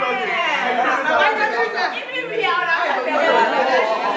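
Group chatter: several young men and women talking over one another at once, too tangled to pick out words.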